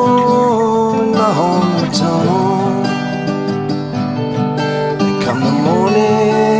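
Two acoustic guitars playing a slow country-folk tune, fingerpicked and strummed, with the last sung note of a vocal line held and wavering over them for the first second or two.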